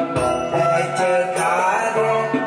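Traditional Lyngngam dance song: voices chanting a melody over a low steady drone.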